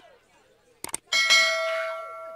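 Two quick clicks, then a single loud strike on a metal bell that rings out in several steady tones and fades slowly, starting about a second in.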